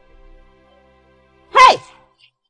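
Quiet sustained background music, then about one and a half seconds in a woman's short, loud cry with a falling pitch.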